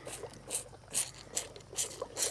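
Bull calf sucking milk from a feeding bottle: short wet sucks repeating about twice a second.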